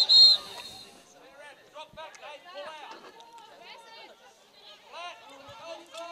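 Umpire's whistle: one short, loud, high-pitched blast at the very start. After it come players' voices calling across the field.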